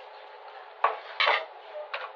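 A metal spoon and china plate clinking as the plate is moved and set aside: one sharp clink a little under a second in, then two more short clatters.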